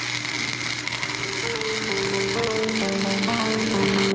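Electric arc welding on steel brackets: the arc's steady crackling hiss, which cuts off sharply right at the end. Electronic background music with a stepped melody comes in underneath about a second and a half in.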